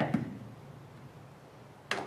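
Quiet handling of a hard-shell plastic iPad case on a wooden table, with one sharp click near the end as the case is tipped over.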